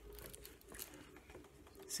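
Faint handling sounds of a closed hardcover picture book being moved and slid across a table: a few soft brushes and light taps.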